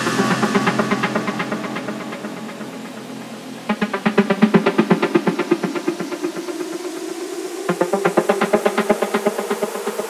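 Melodic techno in a breakdown, with little deep bass: sustained synth pads, and a fast pulsing synth line of repeated notes that comes in suddenly about four seconds in and again near eight seconds, fading each time.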